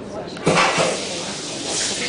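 A red-hot gold bar plunged into water to quench it, setting off a sudden hissing sizzle about half a second in that carries on steadily.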